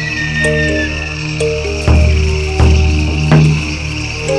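Background music for an animated scene: held melodic notes that change pitch, with three deep drum beats about 0.7 s apart in the second half, over a steady high-pitched nature ambience.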